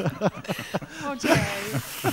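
Speech: voices talking over one another, with light chuckling.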